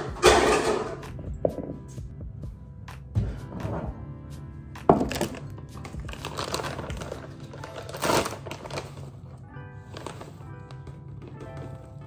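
Background music playing under kitchen handling noises: dull thunks as a mixing bowl and glass measuring cup are set down on a wooden board, and the rustle of a bag of almond flour being handled.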